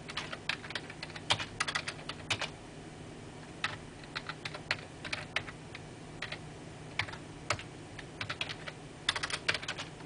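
Typing on a computer keyboard: irregular bursts of key clicks, with short pauses about three seconds in and again around six seconds in.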